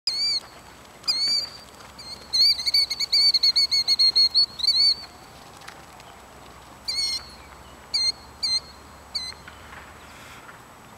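A bird calling loudly and insistently in clear, high, ringing notes. There are single calls at first, then a rapid run of notes for a few seconds, then a few spaced calls near the end.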